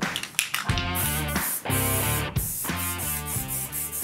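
Rock intro music with electric guitar chords and a steady drum beat.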